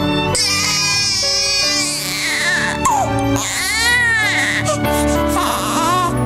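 A baby crying, with two long cries that rise and fall, one starting about half a second in and another around four seconds in, over steady background music.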